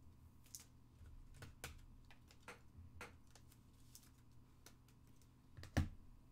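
Trading cards being handled and set down on a box: scattered light clicks and taps, with one sharper tap near the end.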